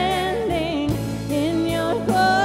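A contemporary worship song sung with vibrato over sustained instrumental accompaniment, the words "You are here, you are holy, we are standing in your glory".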